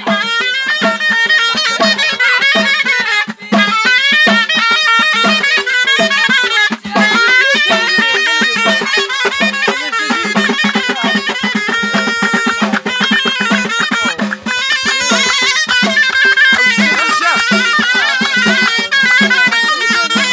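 Moroccan ghaita, a loud double-reed shawm, playing a fast, ornamented melody over hand drums beating a steady rhythm of about two strokes a second.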